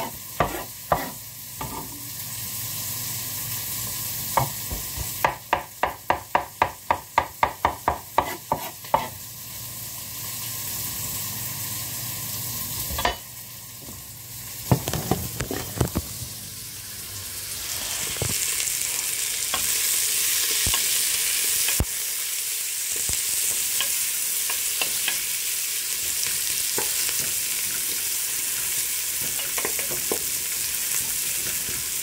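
Knife chopping garlic on a wooden cutting board, a quick run of even strokes about three a second. In the second half, sliced onions sizzle steadily as they fry in an aluminium pressure cooker, stirred with a wooden spoon.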